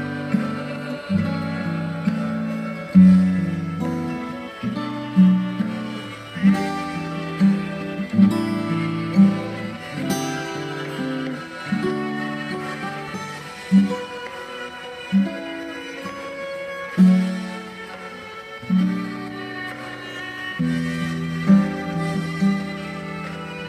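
Steel-string acoustic guitar playing a slow chord progression: each chord is plucked and left to ring, with a new chord every second or two.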